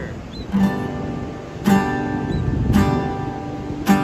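Acoustic guitar strumming an open G major chord: four strums about a second apart, each left to ring.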